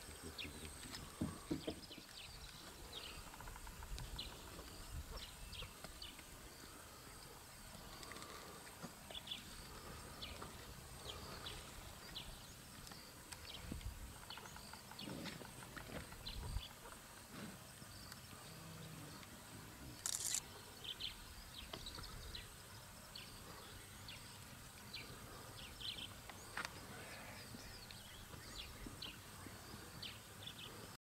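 Faint outdoor ambience: many short, high chirps scattered throughout over a steady thin high tone, with a low rumble underneath and one brief hiss about twenty seconds in.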